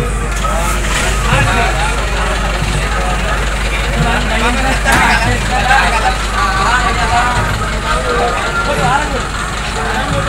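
Several people talking over the low, steady running of an Eicher truck's engine close by.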